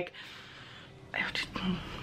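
A woman's breathy whisper or exhale, followed about a second in by a few soft, half-voiced words.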